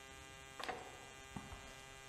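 A faint, steady electrical hum, with two light knocks, the first a little after half a second in and a softer one about a second and a half in.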